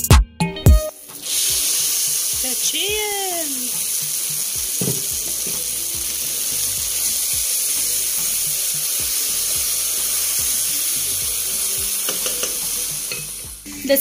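Red rice with tomato purée, peas and carrots sizzling in a hot pot as a wooden spoon stirs it. It is a steady sizzle that starts about a second in.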